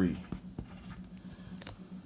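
Pencil writing on paper: a run of short scratching strokes as numbers are written.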